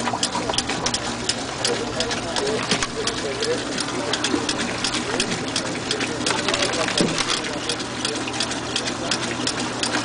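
Laboratory diaphragm jig running: its motor-driven drive pulses the diaphragms in a rapid, even mechanical clatter of several strokes a second over a steady motor hum.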